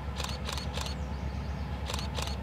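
Camera shutter clicking in quick bursts, three clicks about a third of a second apart early on and two more near the end, over a low steady rumble.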